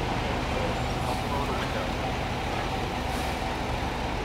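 Steady city street traffic noise: vehicle engines idling and running in slow traffic, with a low steady hum and faint voices in the background.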